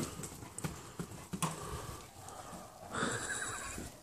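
Light irregular footfalls and knocks of two dogs and a lamb running about on grass, with a short high-pitched sound about three seconds in.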